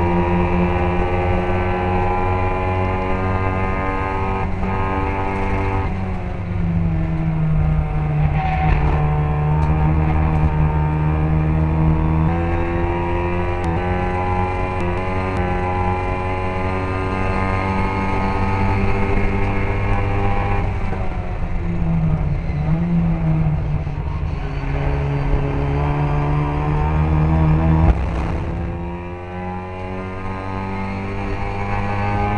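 Classic Mini racing car's four-cylinder engine running hard at high revs, heard onboard; its pitch holds steady for several seconds at a time and shifts at gear changes and lifts. Near the end there is a sharp burst and the engine drops back.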